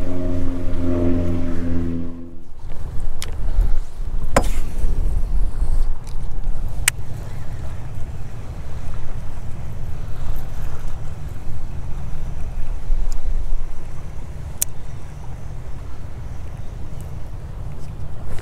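Low, fluctuating rumble of wind and choppy water around an open fishing boat. A steady motor hum cuts off about two seconds in, and a few sharp clicks come later.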